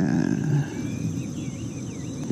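Insects chirping outdoors over a low rumble that is strongest in the first half second and then fades.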